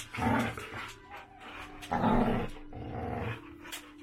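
A dog growling in rough play with another dog, in three bursts, the loudest about two seconds in.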